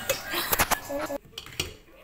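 A few quick clinks of crockery and utensils on a dining table about half a second in, as food is picked from a plate.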